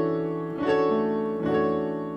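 Keyboard playing sustained gospel chords, struck three times: the five chord, a D major 7 voiced over an E bass with E, A and C sharp in the left hand.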